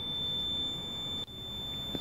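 A Fluke clamp meter's continuity beeper gives one steady high-pitched beep while its two test probes touch, showing zero resistance. The beep cuts off suddenly a little over a second in.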